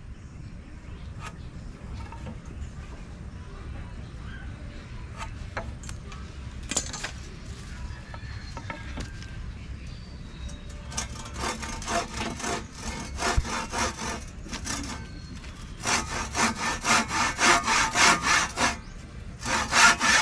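Handsaw cutting through a wooden board. The first half holds only a few faint knocks. About halfway in, a run of back-and-forth saw strokes begins, then stops briefly. Near the end comes a faster, louder run of strokes.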